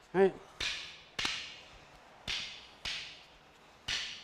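Rattan Kali sticks clacking against each other in a sinawali drill: five sharp wooden cracks, each with a brief ringing tail, struck in pairs about half a second apart.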